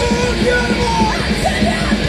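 Punk rock band playing live: electric guitars, bass guitar and drum kit, with a voice singing over them.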